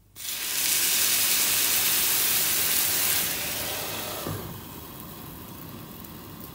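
Water poured into a hot oiled pan of frying gyoza hits the pan with a sudden loud hiss and sizzle, the start of the steaming stage of the fry-then-steam method. After about three seconds it dies down, a light knock comes about four seconds in as the glass lid goes on, and the water goes on sizzling more quietly under the lid.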